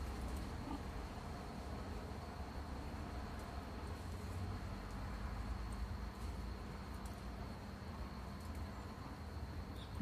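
Quiet background of a steady low hum and a thin, steady high-pitched whine, with faint rustling and light ticks from cotton macramé cord being handled and knotted.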